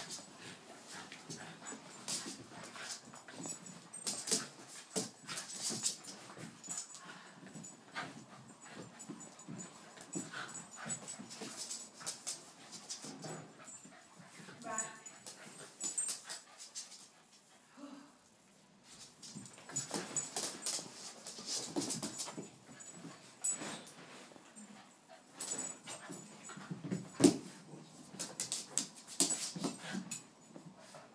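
Two small dogs, a Yorkshire terrier and a Cavachon, play-wrestling on a rug: irregular scuffling and rustling with short dog vocal sounds and whimpers, including a brief pitched whine about halfway through.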